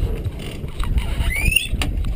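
Wind rushing over the microphone and water noise aboard an Express 27 sailboat under sail, with a brief rising squeak a little past halfway and a couple of sharp clicks.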